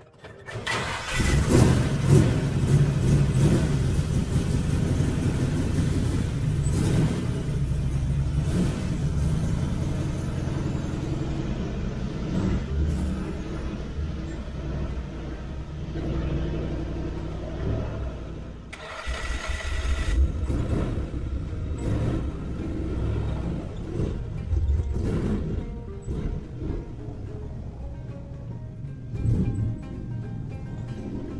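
Rat rod's engine starting about a second in, then running loudly while the car is driven out. Near two-thirds of the way through, it drops briefly and then surges.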